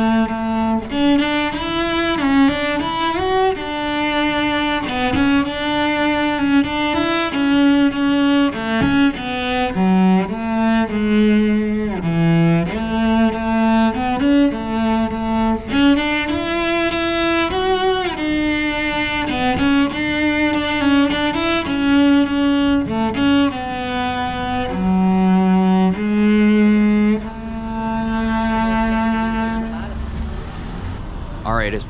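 Solo cello bowed, playing a melody of held notes, one after another, with a longer held low note near the end.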